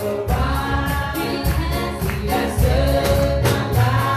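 A worship team of several singers, women and a man, singing a gospel worship song together into microphones, backed by keyboard and a steady beat.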